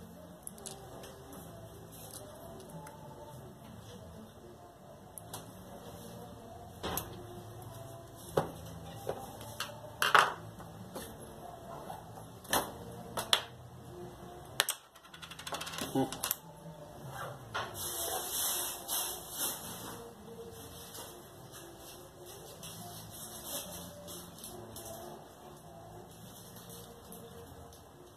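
Disassembled angle grinder parts being handled: the plastic housing halves and the metal armature with its gear give off irregular clicks and light knocks, with about two seconds of rustling around two-thirds through.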